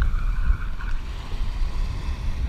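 Wind buffeting the camera microphone with an uneven low rumble, over small waves washing in the shallows.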